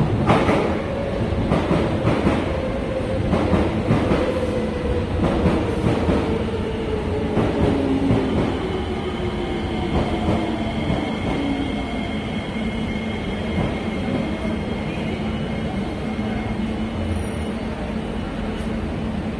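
SMRT metro train pulling into the platform and slowing to a stop. Its motor whine falls steadily in pitch as it slows, with wheels clicking over the rail joints in the first several seconds. A steady high whine comes in around halfway through as it comes to rest.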